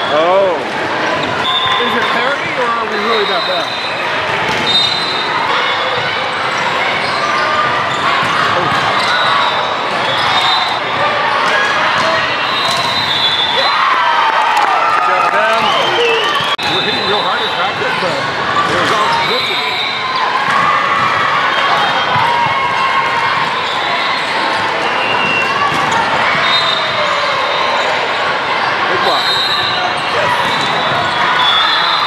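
Busy volleyball hall: many voices talking and calling out across several courts, with sneakers squeaking on the hardwood floor and volleyballs being hit and bouncing, all echoing in the large gym.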